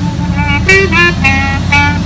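Unaccompanied clarinet playing a slow jazz ballad melody, a run of short notes changing every few tenths of a second, over a low steady rumble.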